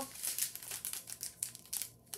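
Small clear plastic bags of diamond-painting drills crinkling as they are handled and turned over, in a run of short irregular rustles.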